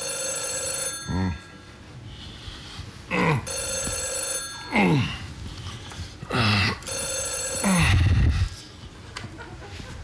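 Telephone ringing three times, each ring about a second long with a few seconds' gap. Between the rings come about five short, loud moans, each sliding steeply down in pitch.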